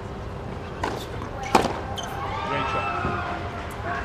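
Tennis ball struck hard with a racket: a sharp crack about a second and a half in, just after a softer knock. A voice calls out for about a second soon after.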